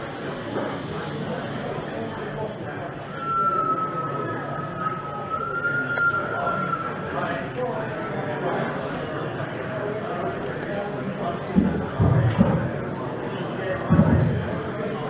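Indistinct chatter of visitors in a busy exhibition hall. A single steady high whistle-like tone sounds for about four seconds from a few seconds in, and a couple of low thumps come near the end.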